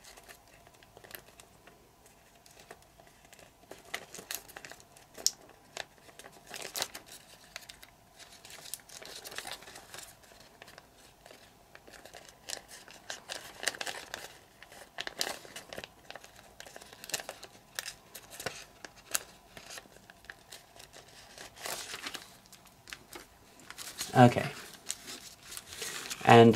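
A sheet of origami paper being folded and creased by hand: intermittent soft crinkles and crackles as flaps are lifted, folded and pressed flat.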